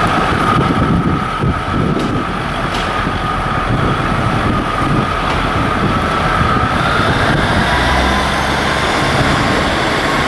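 Class 150 Sprinter diesel multiple unit pulling away under power: steady diesel rumble with a transmission whine that drifts slightly lower, then about seven seconds in higher whines rise as it gathers speed.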